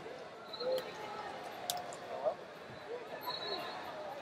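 Echoing ambience of a large wrestling arena: scattered distant voices, a few short high squeaks and a single sharp click partway through.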